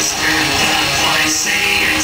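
Black metal band playing live: loud distorted electric guitars over drums, heard from within the audience.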